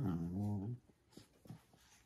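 A Cavalier King Charles Spaniel giving one low, drawn-out growl-like call of under a second while tugging at a plush toy in play, followed by a couple of faint soft knocks.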